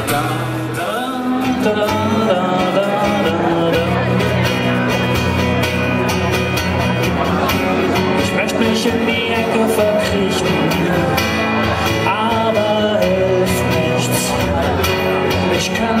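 Live band music: an electric guitar strummed over a steady beat.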